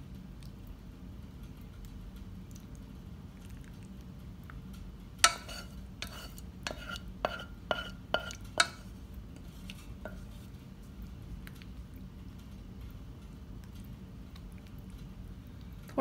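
Wooden spatula scraping thick white sauce out of a saucepan onto pasta in a glass baking dish. About five seconds in comes a run of about eight sharp, ringing knocks over three or four seconds, the spatula knocking against the pan, over a faint steady hum.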